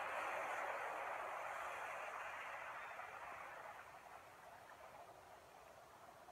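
A steady hiss that fades down between about two and four seconds in and then stays faint.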